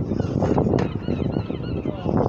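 Birds calling in a run of short, gliding cries over heavy low wind rumble on the microphone.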